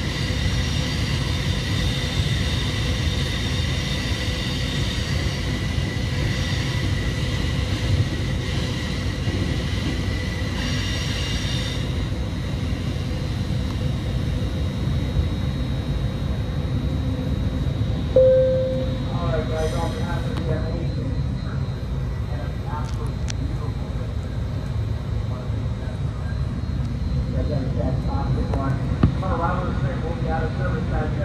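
Caltrain passenger car running on the rails, heard from inside the carriage as a steady low rumble. A steady high whine rides on top and stops about twelve seconds in.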